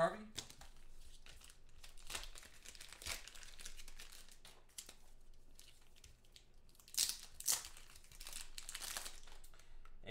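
Crinkling of plastic wrapping and rigid plastic card holders being handled. The crackling comes in scattered bursts, with two sharper, louder crackles about seven seconds in.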